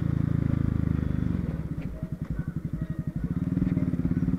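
Honda CB Twister's single-cylinder engine running as the motorcycle rides at low speed. About a second and a half in, the throttle eases off and the engine drops to a quieter, evenly pulsing beat. It picks up again near the end.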